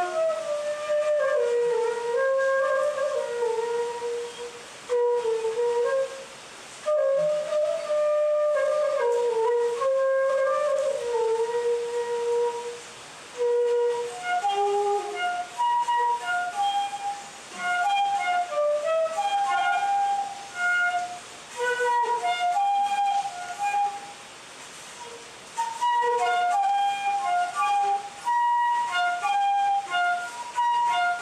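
Homemade bamboo transverse flute playing a slow melody, with short breaks between phrases. Its held notes sit low for the first half; about halfway through the tune moves up into a higher register with shorter notes.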